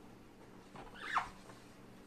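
A lid pulled off a cardboard game box, with one brief falling squeak of cardboard rubbing on cardboard about a second in.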